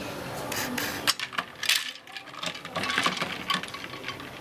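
Quick run of light clinks and clicks of glassware: glasses, bottles and ice cubes being handled on a table.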